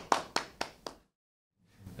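A small group of people applauding: scattered hand claps, about four a second, fading out about a second in.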